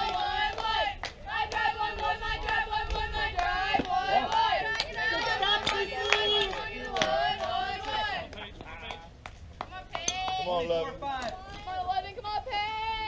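Several girls' voices chanting and cheering together in a softball team cheer. They die down about eight seconds in and pick up again near the end.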